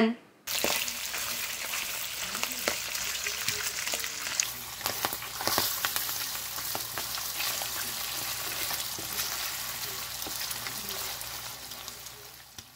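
Beef fat solids frying into cracklins in hot rendered tallow in a frying pan, sizzling steadily with many small pops while being stirred. It starts about half a second in and fades near the end.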